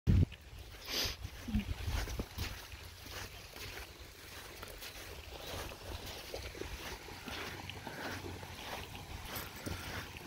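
Outdoor wind rumble on a handheld phone microphone, with a thump right at the start and scattered soft knocks and crunches from footsteps and handling on the sand.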